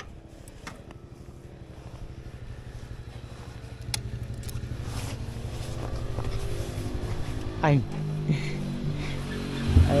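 Motorcycle engine idling with the bike at a standstill, a steady low even putter that slowly grows a little louder.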